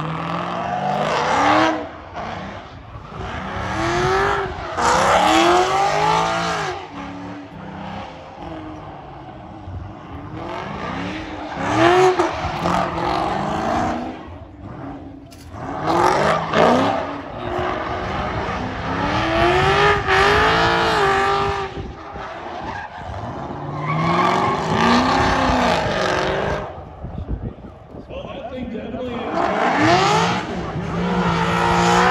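Chevrolet SS's 6.2-litre LS3 V8 revving hard in repeated swells, the pitch climbing and falling every few seconds, with tyre squeal as the rear wheels spin in a burnout. The revs sag between swells as the grippy tyres keep hooking up to the track.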